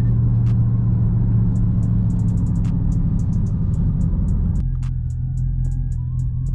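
Low, steady drone of the Dodge Charger 392 Scat Pack's 6.4-litre HEMI V8, heard from inside the cabin while driving. About three quarters of the way through, the drone drops in level and faint thin tones come in.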